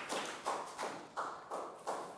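A small group of children and a teacher clapping their hands, a few claps a second, running on until near the end.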